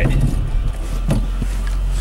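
Mercedes E320 4Matic wagon's V6 engine idling in drive, a steady low hum heard inside the cabin.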